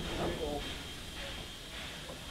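Passenger train carriages rolling slowly past, a steady low rumble of the wheels on the track, with a person's voice calling out briefly near the start.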